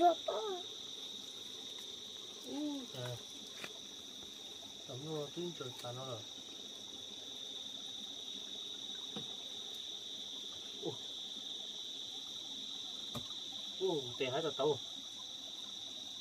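A steady, high-pitched insect chorus sounding without a break, with a short phrase of a person's voice a few times.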